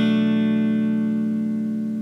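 Ibanez RGT42 electric guitar with a DiMarzio PAF 36th Anniversary neck pickup, played through a Blackstar ID:Core amp: a single chord, struck just before, left to ring and slowly fade.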